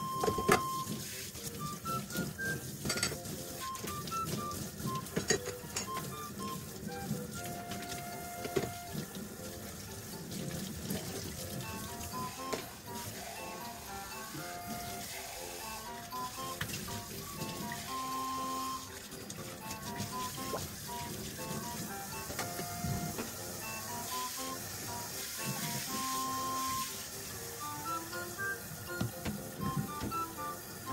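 Background music with a melody of short separate notes over the sound of washing up at a kitchen sink: running tap water with dishes clinking now and then.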